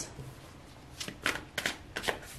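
Tarot cards being handled as the next card is drawn from the deck: a few quick card flicks and slides, close together in the second half.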